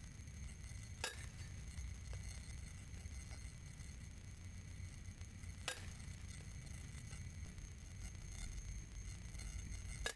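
Baseball bat hitting pitched balls in batting practice: three sharp cracks, each with a brief ring, about four and a half seconds apart, over a faint low steady rumble.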